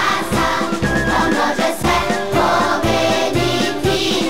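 A children's choir singing an upbeat pop song with instrumental backing and a steady drum beat.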